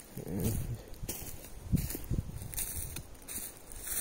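Footsteps on dry leaf litter and twigs on a forest floor, several rustling steps about half a second to a second apart.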